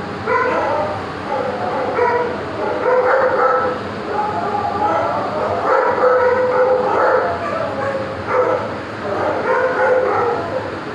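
Dog whining and yipping at a caged cat, a string of short, pitched cries repeating about every half second to a second.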